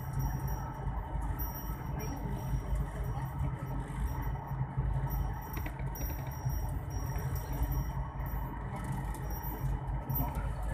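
Steady low engine and road rumble heard from inside a moving vehicle.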